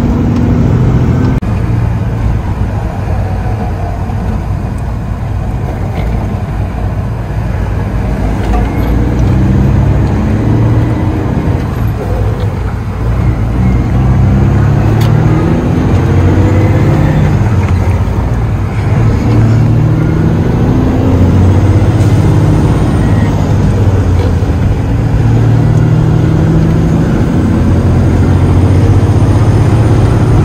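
Semi truck's diesel engine heard from inside the cab, its pitch climbing and dropping again and again as the driver shifts through the gears, over steady road noise.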